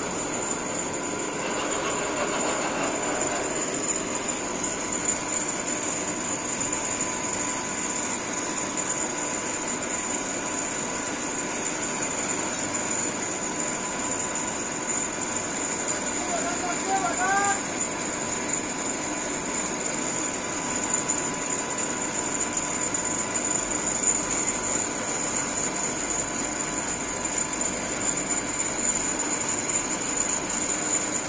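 Gantry crane running steadily as it hoists a stack of concrete railway sleepers, with a constant high whine. A brief rising chirp comes about halfway through.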